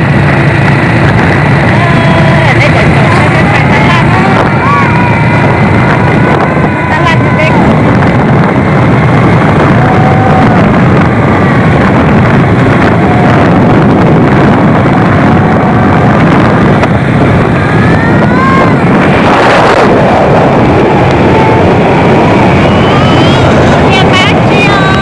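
Small motor scooter running steadily along a road, with wind buffeting the microphone throughout. Voices are heard over it at times.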